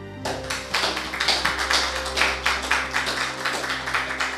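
Audience applauding, starting about a quarter second in, over soft instrumental background music that carries on underneath.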